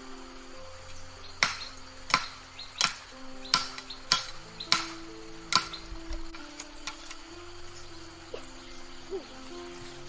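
Bush knife chopping at a green bamboo stalk: seven sharp strikes about two-thirds of a second apart in the first half, then a few fainter knocks, over background music.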